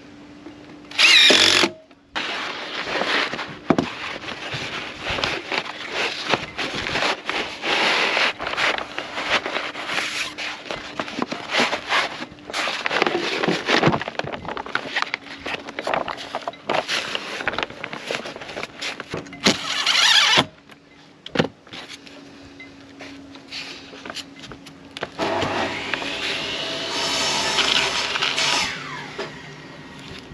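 A DeWalt cordless drill-driver runs in short loud bursts, about a second in and again near twenty seconds, with crackling and rustling of plastic sheeting and tarpaulin being handled in between. Near the end there is a longer whirring run of several seconds.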